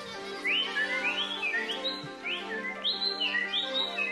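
A whistle-like chirping sound effect, about six short rising chirps, serving as a costumed mascot's 'voice', over sustained background music.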